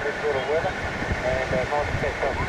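Voice heard through an amateur radio receiver's speaker, thin and narrow in pitch range, with steady whistling tones behind it and wind buffeting the microphone.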